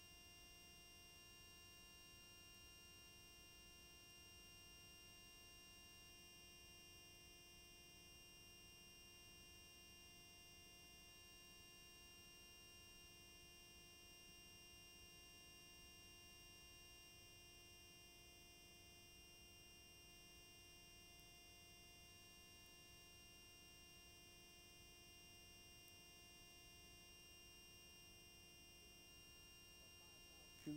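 Near silence: a faint, steady hum and hiss with no events.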